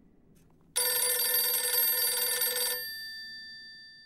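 Desk telephone's electromechanical bell ringing: one ring of about two seconds that starts suddenly about a second in, after which the bell's tones die away.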